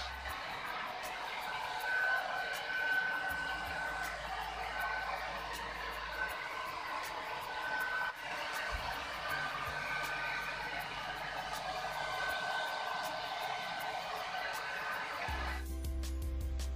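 Handheld hair dryer blowing steadily, a rushing noise with a faint high whistle that comes and goes, as long hair is blow-dried. It starts just after the beginning and cuts off shortly before the end.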